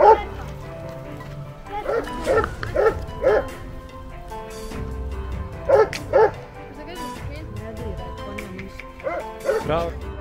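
A dog barking in quick runs of two to five barks, a few seconds apart, over background music.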